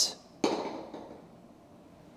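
A golf ball on an indoor artificial-turf putting green: one sharp click about half a second in, then a soft rolling sound that fades away over about a second.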